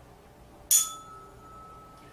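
Tuning fork struck once with a sharp metallic clink about two-thirds of a second in, then ringing on in a steady clear tone. It is held against the foot to test the patient's vibration sense.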